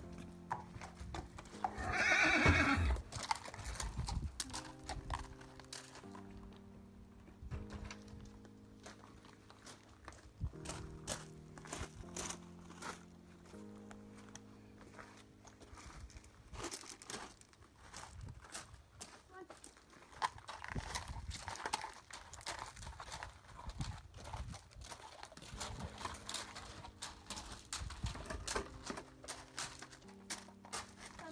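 A horse whinnies loudly once, about two seconds in, then a Fell pony's hooves clip-clop irregularly as he is led at a walk over the stable floor and yard, under background music.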